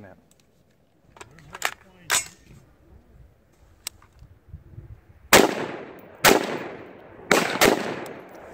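AR-15-style rifle fired four times from the sitting position, the shots about a second apart and then the last two in quick succession, each a sharp report with a ringing tail. A few fainter, sharp cracks come before them.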